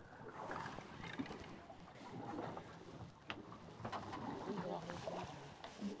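Quiet water and sea noise around a drifting boat, with faint, indistinct voices and a single sharp click a little over three seconds in.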